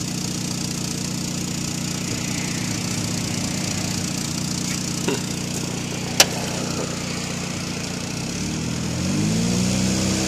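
A Saturn Ion's four-cylinder engine idling steadily, heard from inside the cabin, then revved briefly near the end to about 1,900 rpm. There is a single sharp click about six seconds in.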